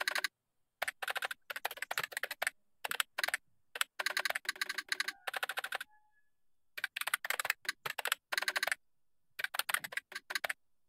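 Computer keyboard typing: quick runs of keystrokes in bursts, broken by short pauses.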